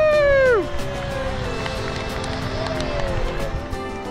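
A person's long, drawn-out "woo" cheer that ends about half a second in, then background music with steady held notes carries on.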